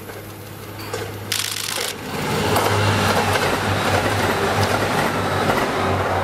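Limited express diesel railcar train passing close by: a low diesel engine hum with wheel and rail noise, growing louder and staying loud from about two seconds in. A brief hiss comes just over a second in.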